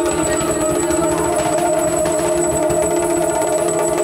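Yakshagana accompaniment: a steady drone of held tones under fast, continuous hand drumming on the maddale barrel drum.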